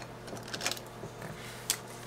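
Faint handling of a clear plastic zipper pouch in a cash-stuffing binder, with small rustles and taps and one sharper click near the end, over a steady low hum.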